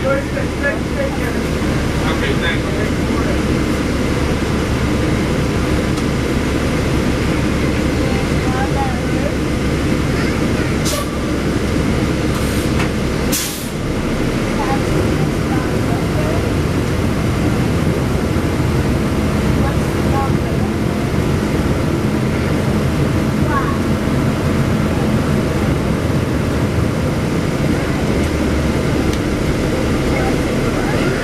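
Interior of a 2009 NABI 416.15 40-foot transit bus under way: a steady low drone of engine and drivetrain, with a few short, sharp air hisses about halfway through, typical of air brakes.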